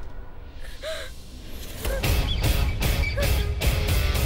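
Dramatic background score: a low rumbling drone with a short rising-and-falling cry about a second in, then a driving percussive beat of about two to three hits a second kicks in about halfway and the music grows louder.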